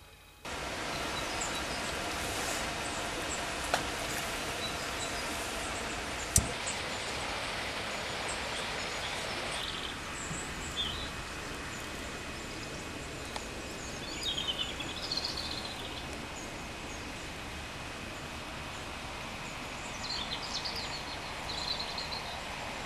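Steady outdoor background noise on a canal bank, with small birds chirping briefly several times from about ten seconds in. Two sharp knocks come early on, about four and six seconds in.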